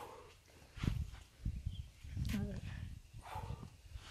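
A man breathing hard and grunting with effort as he does crunches: three heavy exhales about a second apart, the middle one voiced into a short wavering grunt.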